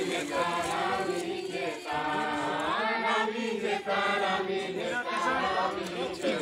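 A group of people singing a hymn together, the voices held in long, gliding notes.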